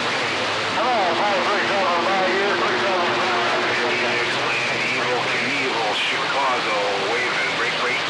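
CB radio speaker on channel 28 receiving long-distance skip: steady band static and hiss with faint, garbled voices coming through underneath. A steady buzzing tone runs from about one second in for about three seconds.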